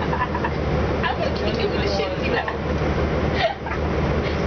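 Orion VII NG diesel city bus idling at a standstill, heard from inside the cabin as a steady low drone, with people talking in the background and a short knock about three and a half seconds in.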